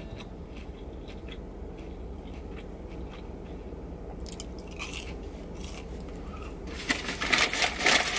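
A person biting and chewing a cheese curd, with small crunching mouth sounds over a steady low hum. About seven seconds in comes louder rustling and crackling.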